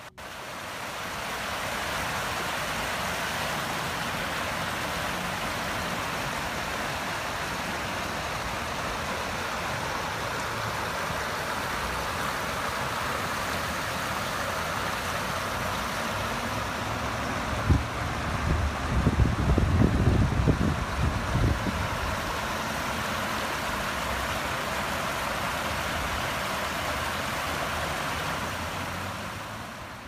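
Creek water running over a shallow rocky riffle, a steady rushing noise. A little past the middle, a few seconds of loud, irregular low rumbling hits the microphone.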